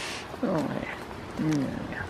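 Two short, low goat bleats, about half a second and about a second and a half in.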